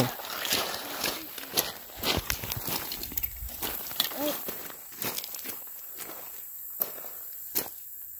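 Footsteps on loose gravel, a run of irregular steps for the first five seconds or so, then quieter, with two sharp clicks near the end.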